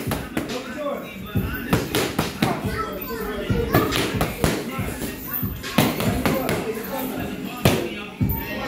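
Boxing-gloved punches smacking into focus mitts: more than a dozen sharp smacks at an irregular pace, some in quick pairs and threes.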